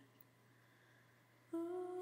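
Near silence, then about a second and a half in a steady, humming drone starts: one held tone from an ambient background pad.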